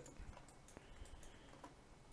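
Near silence: room tone with a few faint computer clicks, near the start, just before a second in and at about a second and a half.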